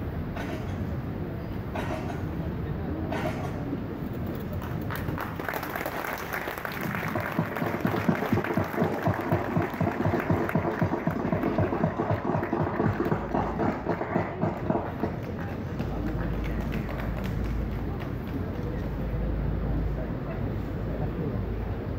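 Applause from many people clapping, swelling about six seconds in and dying away about fifteen seconds in. A low rumble follows near the end.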